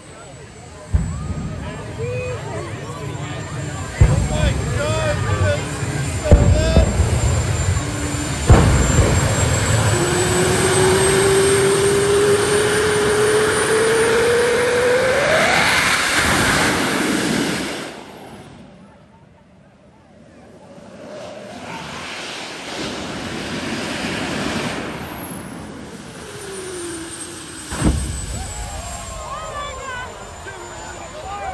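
Jet engine mounted on a golf cart running with a high turbine whine, letting out sudden loud bursts of flame from its exhaust several times. Partway through, a tone climbs slowly and then steeply as the engine spools up, before the sound cuts off abruptly. Crowd voices are underneath.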